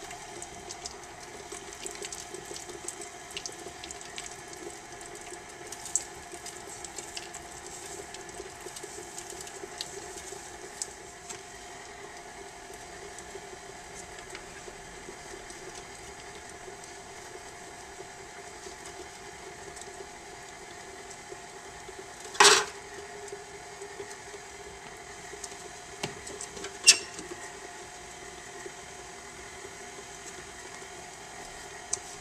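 KitchenAid stand mixer running at low speed, creaming sugars and cream cheese: a steady motor hum with scattered light clicks in the first dozen seconds. Two sharp knocks stand out, about 22 seconds in and again near the end.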